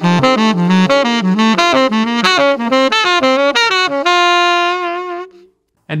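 Tenor saxophone playing a quick run of eighth-note arpeggios that alternate between two major triads a half step apart, F major and F sharp major, skipping up each triad and stepping back down. The run ends on a held note about four seconds in that fades out shortly before the end.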